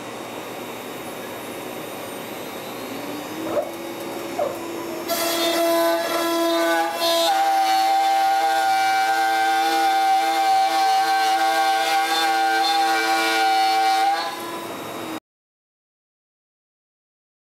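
Carbide 3D 2.2 kW spindle on a CNC router: a steady hum, then a whine that climbs in pitch and settles about three seconds in. From about five seconds in it is much louder, a steady high whine as a 3/8-inch two-flute upcut end mill at 22,000 RPM cuts full depth through three-quarter-inch plywood, cut off suddenly near the end.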